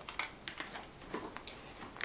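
Handling noise from a coiled power cable being lifted off its Styrofoam packing: a scatter of light clicks and soft rustles.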